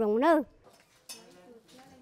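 An elderly woman's voice speaking briefly and stopping about half a second in, followed by faint background noise.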